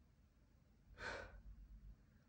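A woman's short, breathy sigh about a second in, against near silence.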